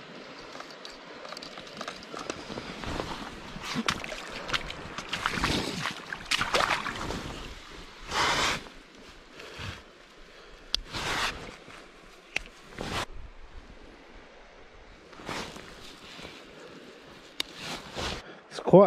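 Irregular rustling and splashing from hands and gear moving in shallow water, over a low steady wash of water. Several louder bursts come and go through the stretch.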